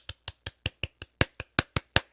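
A person's hands clapping lightly and quickly, a dozen or so even claps in a row, miming an audience's applause.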